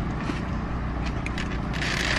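Plastic utensil scraping and clicking against a takeout container as onions are picked off a burger, with a louder scrape near the end, over a steady low hum in a car's cabin.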